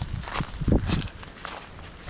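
Footsteps on dry fallen leaves and grass: several uneven steps, the loudest near the middle.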